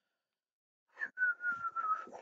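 A person making a single high, thin note about a second in, held for under a second and sliding slightly down in pitch, with breath noise around it.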